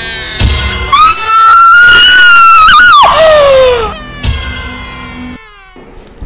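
Dramatic film score with a heavy bass hit, then a woman's long, shrill scream that wavers and falls away at its end. A second bass hit follows, and the music cuts off suddenly near the end.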